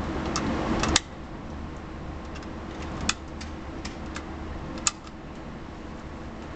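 7.62×39 mm cartridges being thumbed one at a time into an AK-47 magazine, each round snapping into place with a sharp metallic click. There are three loud clicks about two seconds apart, with fainter ticks between, over a steady hum.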